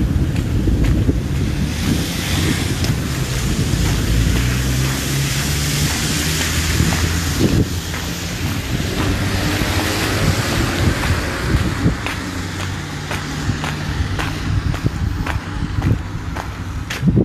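Wind rushing and buffeting on a handheld phone's microphone, swelling and easing, over a low steady hum of road traffic. A few short knocks come from handling the phone.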